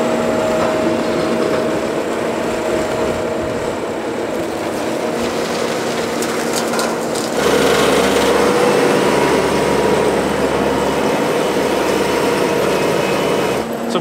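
Bobcat T770 compact track loader's diesel engine running steadily while it carries a fuel tank; the engine sound gets suddenly louder and deeper about seven seconds in.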